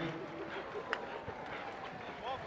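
Polo ponies' hooves on turf, faint against open-field ambience, with one sharp knock about a second in as a polo mallet strikes the ball.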